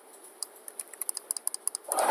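Typing on a computer keyboard: a quick run of short key clicks, roughly ten a second, starting about half a second in.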